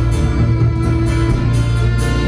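Live folk-rock band playing: strummed acoustic guitar, electric guitar and fiddle over a drum kit keeping a steady beat with regular cymbal hits, about four a second, and a strong bass.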